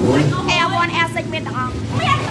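Several sport motorcycles idling together, a steady low engine sound under people talking.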